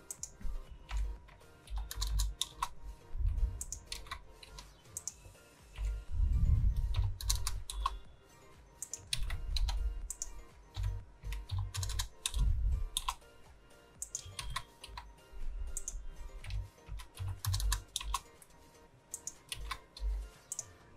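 Computer keyboard keys and mouse buttons clicking in irregular bursts, with dull low thumps under the clicks, as keyboard shortcuts and values are entered.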